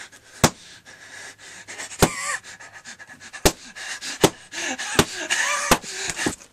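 Six sharp knocks from a rubber mallet, spaced roughly a second apart, between a man's panting breaths and short vocal groans.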